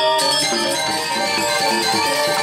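Balinese gamelan music: struck metallophones ringing in quick successions of notes.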